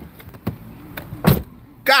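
A few light knocks, then a car door shutting with one loud thump about a second and a half in.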